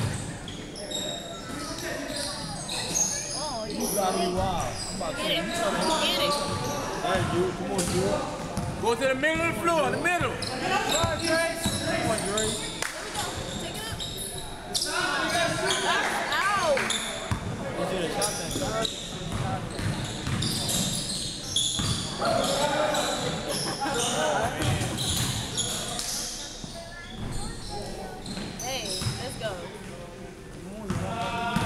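Basketball bouncing on a hardwood gym floor during a game, with sneakers squeaking and players' voices calling out, all echoing in a large hall.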